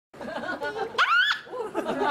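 Beluga whale calling: a run of chattering, laugh-like calls, with a loud rising squeal about a second in.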